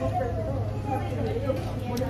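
Low, indistinct talk in a restaurant dining room over a steady low hum.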